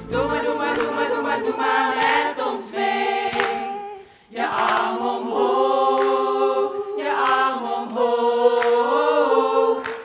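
A cast of women singing together in chorus, in long held phrases with little or no instrumental backing; the singing breaks off briefly about four seconds in.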